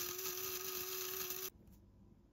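Electric coffee grinder running with beans in it: a steady motor whine over a gritty grinding noise, cutting off suddenly about one and a half seconds in.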